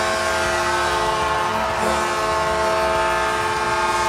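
Arena goal horn sounding a steady chord of several tones, signalling a goal just scored.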